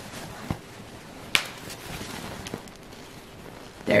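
Hands handling a silk pillowcase on a pillow: quiet fabric rustling with a few short sharp clicks, the loudest about a second and a half in.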